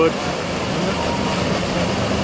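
Garden waterfall cascading over rocks into a pond: a steady, even rush of falling water.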